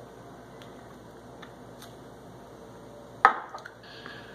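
Someone drinking soda from a glass bottle: a few faint ticks, then one sharp, short knock about three seconds in, the loudest sound.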